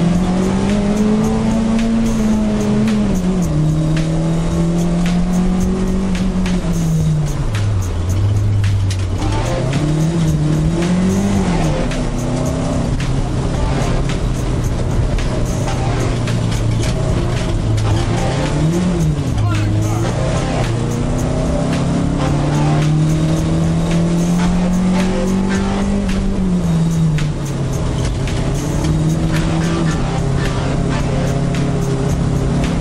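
Car engine revving up and dropping back again and again as the car accelerates and brakes through an autocross course, its pitch rising and falling every few seconds.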